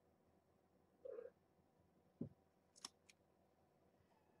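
A young kitten's short, faint mew about a second in, then a soft bump and two light clicks near the end.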